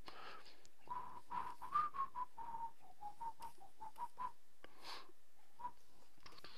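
A person whistling a short, quiet tune of brief notes that wander a little up and down around one pitch, from about a second in until past four seconds, with one more note near the end. Faint clicks sound throughout.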